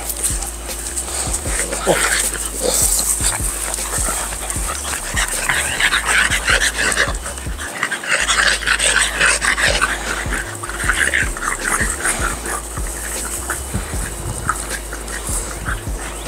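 Several French bulldogs making a run of short dog noises as they play-wrestle.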